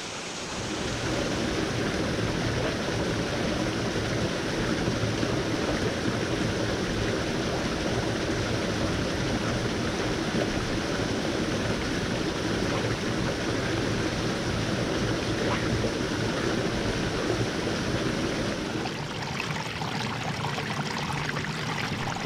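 Steady rush of flowing river water, easing a little in the last few seconds.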